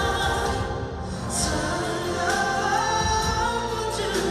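Male vocalist singing a Korean pop ballad live into a handheld microphone over instrumental accompaniment through the concert sound system, with a sung note rising and held from about halfway through.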